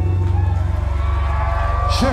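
Live metalcore band through a loud club PA: guitars and bass held in a sustained low drone, with ringing tones above it.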